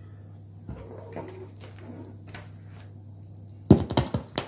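A steady low electrical hum from a wireless microphone system playing through a portable speaker, with faint rustles. Near the end comes a sharp, loud knock and handling noise as the microphone transmitter is picked up.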